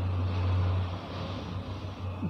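A low, steady hum that is louder for about the first second and then eases off, over faint background noise.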